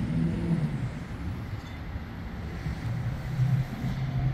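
Low, steady hum of an idling vehicle engine, with a faint wash of outdoor traffic noise.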